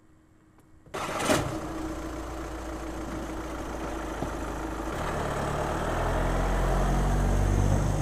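Volkswagen Touran police car's engine starting about a second in, with one sharp knock just after, then running and growing louder as the car pulls away.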